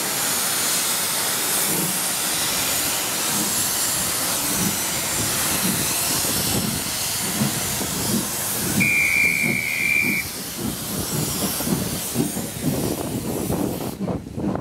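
Double-headed steam locomotives starting a train: a loud steady hiss of escaping steam, typical of cylinder drain cocks open on starting, over exhaust beats that quicken as the train gets under way. A short steam-whistle blast comes about nine seconds in.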